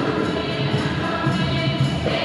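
A choir of many voices singing a Garífuna church hymn.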